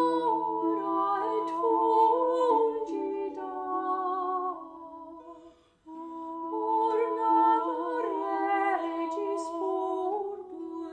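Women's voices singing a slow, sustained melody in two-part harmony. The singing dies away about halfway through and starts again a moment later.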